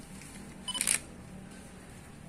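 A single short, sharp click-like clatter about three quarters of a second in, over low room noise.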